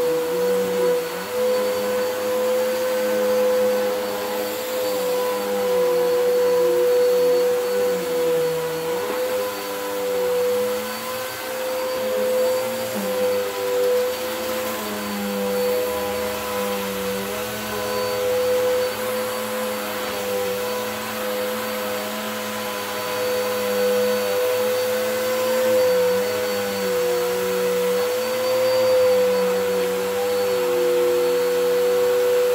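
Upright vacuum cleaner running on carpet: a steady motor whine over a lower hum, the level rising and falling slightly as it is pushed back and forth.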